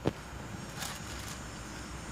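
Faint, steady low rumble of street traffic heard from inside a car, with a short click near the start and a soft rustle about a second in.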